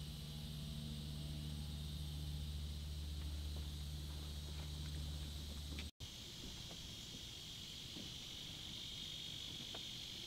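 Insects trilling steadily in the background. Under them a steady low hum runs for the first six seconds and breaks off at an abrupt cut, leaving only the insects and a few faint ticks.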